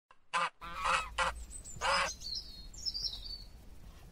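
Four short honking bird calls in the first two seconds, followed by a few faint, high chirps.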